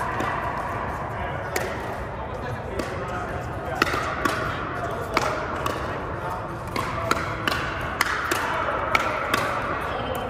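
Pickleball paddles striking the ball: a dozen or so sharp pops at irregular intervals, coming faster and closer together in the second half, over a steady background of distant voices.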